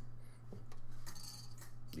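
A few faint clicks and short scrapes of handling an acoustic guitar, its metal capo and strings touched by the hand, over a low steady hum.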